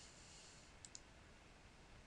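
Near silence broken by two faint, quick computer mouse clicks about a second in, close together.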